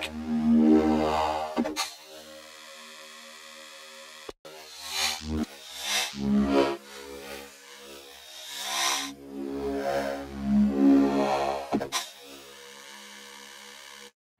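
UHE Hive 2 software synth sustaining a low note from a wavetable built from a drum-break sample; the timbre keeps changing as the wavetable position moves through different slices of the break. It is a steady low tone whose brightness swells and falls several times, with short hissy flares.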